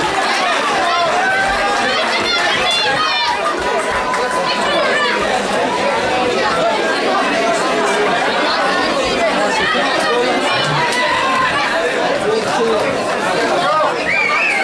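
Loud crowd chatter in a hall: many voices talking over one another at once, with no single speaker standing out.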